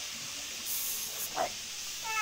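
A brief high hiss about a second in over steady background noise, followed by a short faint rising sound.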